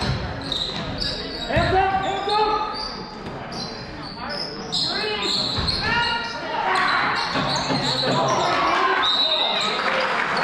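Basketball bouncing on a hardwood gym floor during play, with shouting voices ringing in the large hall; crowd noise thickens over the last few seconds.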